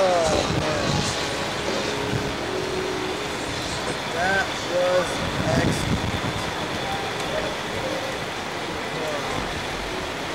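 Steady outdoor background rumble and hiss, with a few brief voice fragments in the middle.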